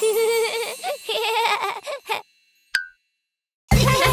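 Cartoon children's music with a sliding voice-like line trails off, followed by about a second and a half of silence. In the silence there is a single short ding. Near the end, new upbeat children's music with a steady bass beat starts.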